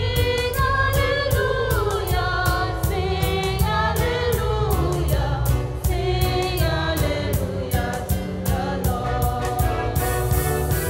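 A church choir sings a hymn with several voices, backed by bass and a steady percussion beat. It is the sung acclamation after the Gospel reading at Mass.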